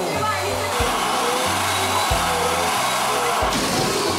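Electric balloon pump running steadily as it blows up a balloon, over a children's song with a steady beat.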